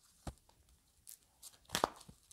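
A tarot deck being shuffled and handled: a few short, scratchy card slaps and rustles, growing louder with a cluster near the end.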